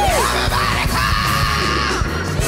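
Gospel worship song: a woman belts into a microphone over the band, sliding down from a high note at the start, then holding a long high note in the second half.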